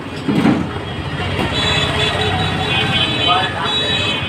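Roadside traffic and voices over Mughlai parathas deep-frying in a wide iron kadai of oil, as a spatula turns them. A brief thump comes about half a second in.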